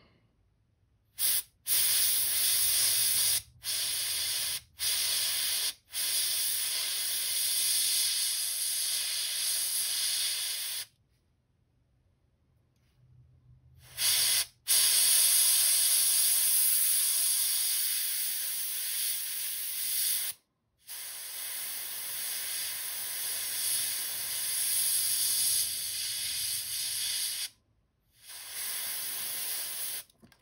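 Airbrush spraying paint: a high, steady hiss of air that starts and stops as the trigger is worked. Short bursts at first, then longer runs of several seconds, with a pause of about three seconds midway.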